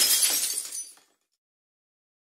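Glass shattering: the tail of the break, with shards tinkling and clattering as it fades away about a second in.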